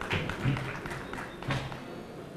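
Scattered hand claps from a small audience, applause for a presentation on stage, with the two loudest claps about half a second in and near one and a half seconds.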